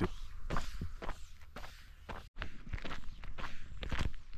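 Footsteps of a person walking on gravelly asphalt in 3D-printed flexible TPU mesh shoes, about two steps a second, with a brief dropout just past halfway.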